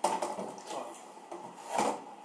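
Hand wiping across a whiteboard: a few short rubbing strokes, the loudest near the end.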